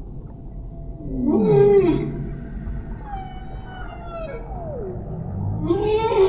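Humpback whale song: long calls that slide in pitch, one rising then falling about a second in, a slow falling call around the middle, and another rising, falling call near the end.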